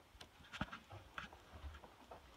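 Faint, irregular knocks and rustles from a handheld phone being carried and handled as the holder walks.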